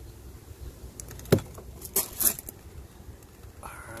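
Several sharp metallic clicks and knocks, the loudest a little over a second in and two more about a second later, as the Mercury outboard is let down on its trim cylinders, over a low rumble.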